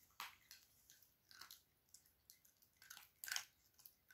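A small Chihuahua chewing dry kibble: faint, irregular crunches, the loudest a little past three seconds in.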